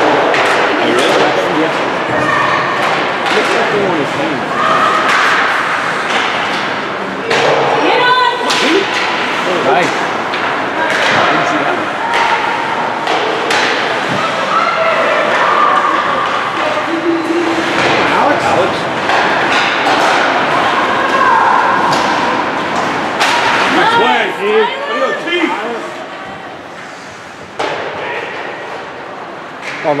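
Ice hockey play in an echoing indoor rink: repeated thuds and slams of pucks, sticks and players hitting the boards and glass. Spectators shout over the steady rink noise, and things quiet somewhat near the end.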